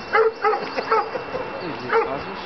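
A dog barking: four short, sharp barks, three in quick succession and then one more near the end.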